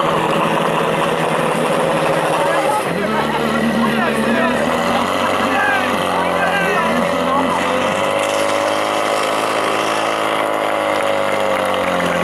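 Portable fire-pump engine running hard as it drives water through the hoses, its pitch shifting up and down several times, with voices shouting over it.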